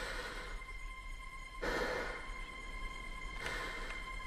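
Tense trailer sound design: a steady high ringing tone over a low hum and a haze of noise, beginning suddenly, with a brief swell about two seconds in and another near the end.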